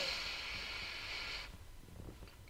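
A steady hiss lasting about a second and a half, stopping abruptly.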